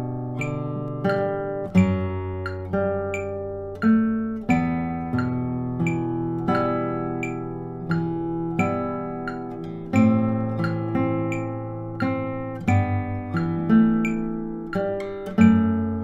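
Classical guitar played fingerstyle at a slow tempo: single plucked melody and arpeggio notes about twice a second, each ringing out over held bass notes.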